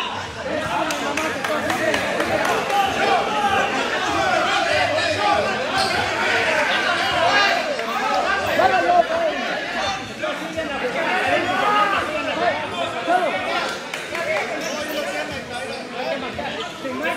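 Crowd of spectators chattering: many voices talking over one another at once.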